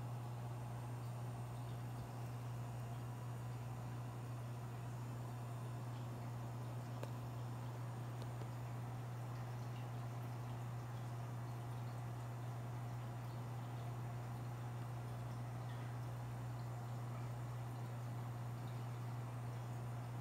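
Aquarium filter running: a steady low hum.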